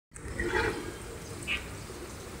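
Water running from an aquaponics grow bed through a hose back into the fish tank, splashing and gurgling, with a couple of louder gurgles.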